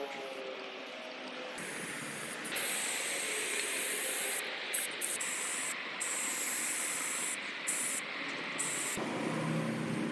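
Aerosol spray-paint can spraying onto a wall in a series of hissing bursts with short breaks between them, louder and steadier from about two and a half seconds in.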